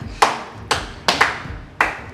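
Slow, deliberate hand claps, four or five sharp claps about half a second apart.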